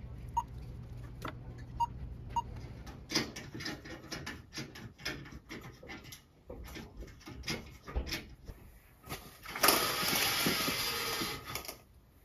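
A few short beeps from a store self-checkout scanner over a low hum. Then comes a run of light clicks and knocks, and about two seconds of rattling near the end as the slats of venetian blinds are raised.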